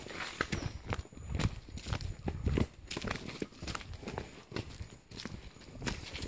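Footsteps of a person walking quickly along a forest dirt path, about two steps a second, with leafy undergrowth brushing past.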